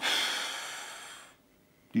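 A man's long audible exhale, a sigh that fades away over about a second and a half.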